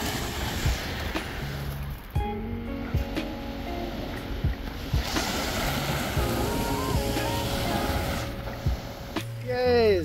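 Small waves washing onto a pebble shore, swelling at the start and again about halfway through, under background music.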